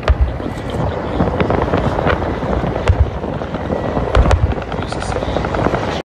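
Military transport helicopter flying low, its rotor and engine noise heavy in the low end, with a few sharp cracks scattered through it.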